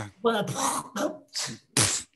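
A woman's voice making about five quick, short wordless vocal sounds with gliding pitch, the last one breathy.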